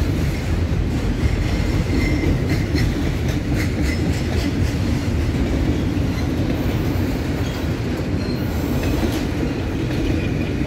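Autorack cars of a long freight train rolling past: a steady, loud rumble of steel wheels on rail, with scattered clicks as wheels cross rail joints and a faint thin wheel squeal about two seconds in.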